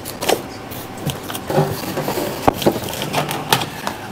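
Rummaging in a packing box: continuous rustling of packaging and a plastic bag being pulled out, with a few sharp clicks and knocks of items being handled.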